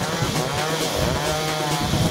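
Chainsaw revving up and back down, its pitch rising and falling, with the background music going on underneath.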